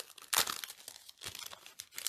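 Clear plastic packaging and a sheet of adhesive-backed snowflake stickers crinkling as they are handled: a few short, irregular crackles.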